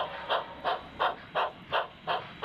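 Steam locomotive exhaust chuffing at a steady pace, about three chuffs a second.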